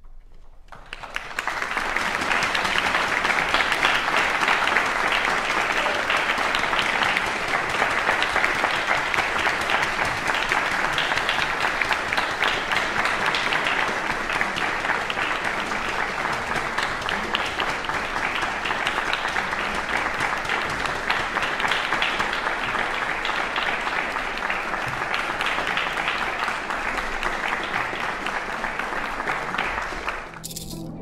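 Audience applauding, starting suddenly about a second in and continuing as a steady, dense clapping.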